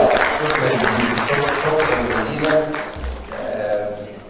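Audience applauding, with voices heard over the clapping; the applause dies down near the end.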